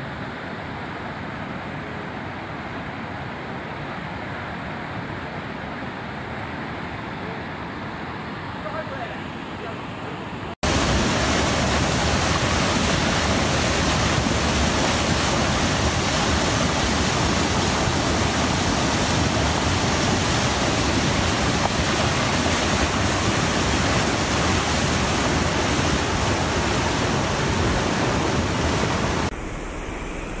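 Swollen, muddy floodwater rushing in a river: a steady noise of fast-flowing water. About ten seconds in it cuts abruptly to a louder, harsher rush of water, which drops back shortly before the end.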